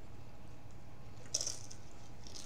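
A single short crunch about two-thirds of the way through as a tortilla chip is bitten, over a low steady room hum.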